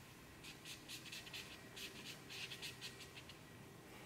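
Faint scratching of a black marker on drawing paper, a quick run of short strokes in little clusters with brief pauses between.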